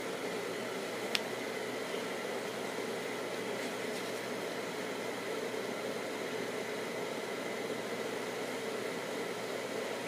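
Steady fan-like background hiss with no distinct events, apart from one faint click about a second in.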